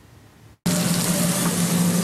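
Restaurant kitchen noise, an even loud hiss over a steady low hum, starting abruptly about half a second in after a brief quiet stretch.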